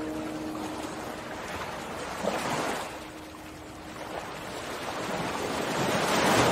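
Soft surf: waves washing in, heard as swells of rushing noise, one about two and a half seconds in and a bigger one building near the end. The last guitar chord of the song dies away at the start.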